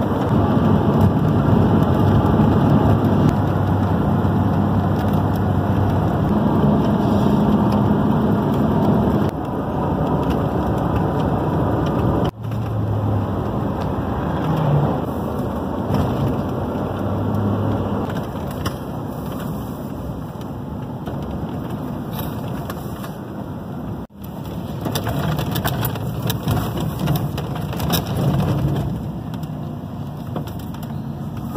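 Road and engine noise heard inside a moving car's cabin: a steady rush with a low engine hum. The sound drops out for an instant twice, about twelve and twenty-four seconds in.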